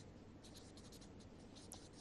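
Faint sound of a felt-tip marker writing a word on paper.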